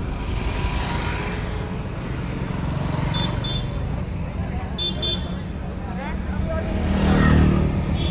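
Steady low rumble of a car rolling slowly through traffic, heard from inside the cabin, with voices in the background.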